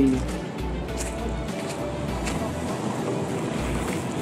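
Wind buffeting a handheld camera's microphone in uneven gusts over a steady outdoor background noise, with a faint held tone about a second in.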